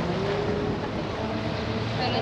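An engine running steadily amid dense outdoor noise.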